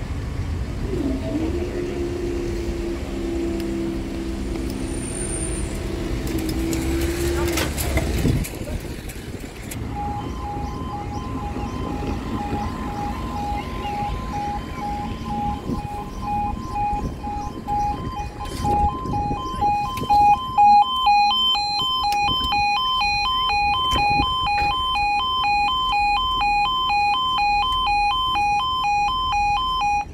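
Level crossing warning alarm sounding: two tones pulsing rapidly in alternation, with a higher alarm tone joining a few seconds later, signalling that a train is coming and the barriers are closing. Before it, for the first several seconds, a steady low drone that cuts off abruptly.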